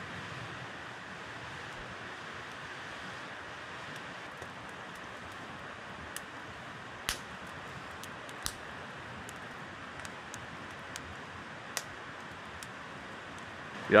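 Steady rushing of a nearby river, with a few sharp crackles from a wood campfire scattered through it.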